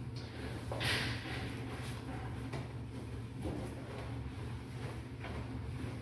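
A sponge being rubbed in a few strokes over ceramic wall tiles, spreading cleaning product, with a steady low hum underneath.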